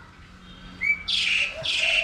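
A small bird chirping, with a quick series of high chirps about two a second that begins about a second in.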